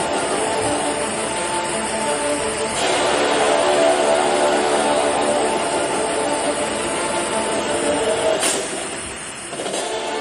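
Background music with sustained held tones; it dips briefly shortly before the end.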